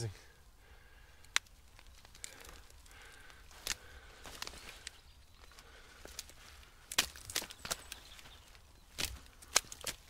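Rustling and scattered sharp cracks as a Jerusalem artichoke plant's root clump and tubers are pulled up out of loose compost and handled, the loudest cracks about seven and nine seconds in.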